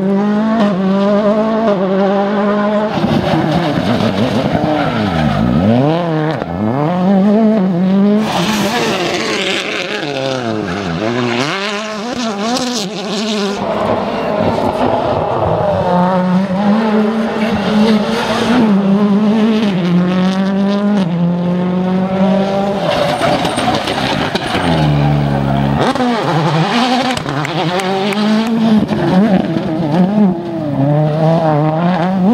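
Ford Fiesta RS World Rally Cars' turbocharged four-cylinder engines revving hard, the pitch falling on braking and climbing again on acceleration through tight bends, several times over. Stretches of tyre and road noise ride over the engines, loudest a little before halfway.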